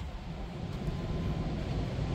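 Steady low rumbling background noise, growing slightly louder, with no distinct events.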